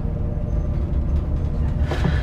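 A steady low rumble in a film scene's soundtrack, even in level throughout.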